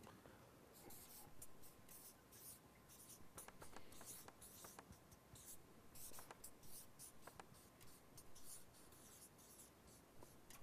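Faint scratching of writing on paper in short, irregular strokes, over near-silent room tone.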